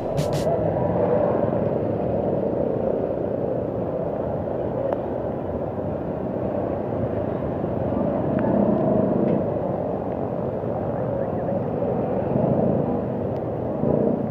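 Street traffic on a wet road: an even, steady rumble of engines and tyres, swelling a little as vehicles pass.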